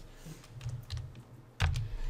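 Computer keyboard being typed: a few separate key clicks, with one louder knock about one and a half seconds in.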